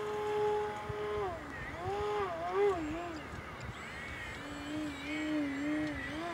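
Electric motor and propeller of a Flite Test Edge 540 foam RC airplane buzzing in flight. A steady tone for about a second, then the pitch wobbles up and down, and it settles to a lower steady tone near the end.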